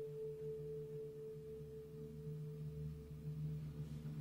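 Orchestra holding a soft, sustained chord. A high held note fades out near the end, while a lower note and a soft low rumble swell beneath it.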